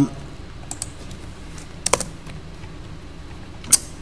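A few scattered keystrokes on a computer keyboard, about half a dozen sharp clicks with the loudest near the end, as a Jupyter notebook cell is run.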